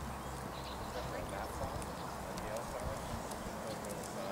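Horse's hoofbeats at a trot on sand footing, with a voice faintly behind.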